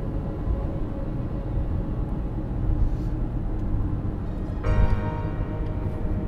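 Steady low rumble of a moving car heard from inside the cabin, under soft background music; a brighter sustained musical note or chord comes in about three-quarters of the way through.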